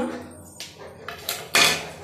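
A small food dish knocking on a concrete floor: a few light clicks, then a louder short clatter about one and a half seconds in.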